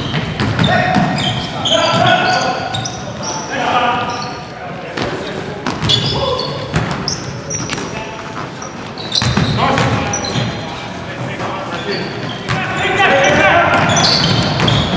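Basketball game in a gym: a ball bouncing on the hardwood, short high sneaker squeaks and players shouting, echoing in the hall.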